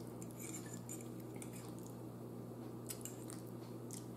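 Faint, scattered clicks and scrapes of a metal fork against a plate as spaghetti is twirled, over a low steady hum.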